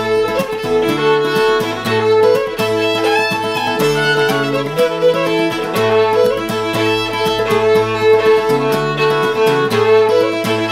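Fiddle and acoustic guitar playing a folk tune together. The fiddle bows the melody over a held drone note, while the guitar strums a steady rhythm with changing bass notes.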